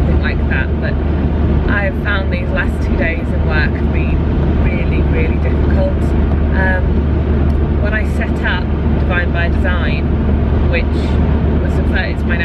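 Car cabin noise while driving: a steady low engine and road rumble, with a woman talking over it.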